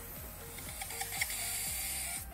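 A steady high hiss with faint music underneath; the hiss cuts off suddenly at the end.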